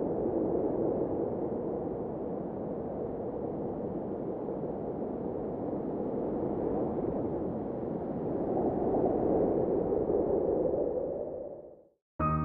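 A steady, dull rushing-noise sound effect under an intro title sequence, swelling a little about nine seconds in and then fading out just before the end.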